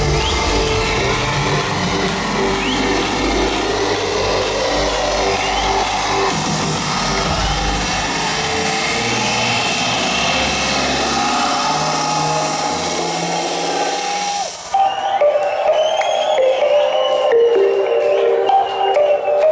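Loud electronic dance music from a live DJ set, played over a club PA and picked up from the crowd. The deep bass drops out about eleven seconds in, and a few seconds later a hissing noise build cuts off suddenly, leaving a melodic breakdown.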